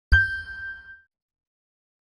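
A single bell-like ding sound effect struck over a low thud, ringing out and fading within about a second.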